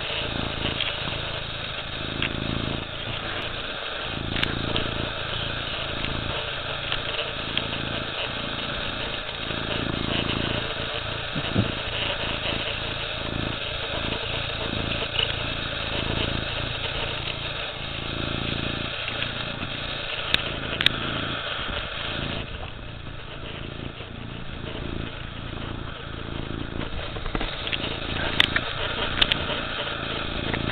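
Domestic cat purring right at the camera microphone: a low rumble that swells and fades with each breath, about once a second. A few sharp clicks come near the end.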